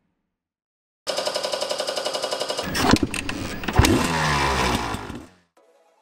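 Motorcycle engine starting abruptly with a fast pulsing beat, then revved louder for a few seconds, rising in pitch, before cutting off suddenly.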